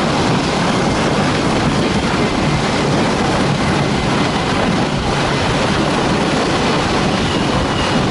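Motorized snow tow's 18.5 hp Lifan engine running steadily under load, pulling a train of loaded sleds. It is mixed with the constant rumble and hiss of the sleds running over packed snow.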